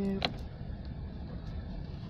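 Steady low rumble of a car's cabin noise. A drawn-out voice ends with a click right at the start.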